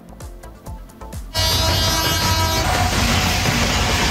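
A soft, evenly ticking music bed. About a second and a half in, a loud news-report stinger cuts in: a sustained horn-like chord over a rushing swell that turns into a dense roar.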